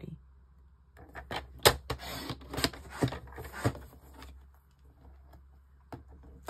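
Paper trimmer cutting cardstock: from about a second in, a rasping slide of the blade along its track with several sharp clicks, over about three seconds, along with the card being handled on the trimmer.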